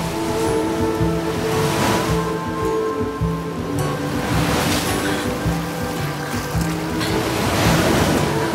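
Ocean surf breaking and washing in three surges, about two seconds in, near the middle and near the end, under orchestral film score music with a repeating low bass figure.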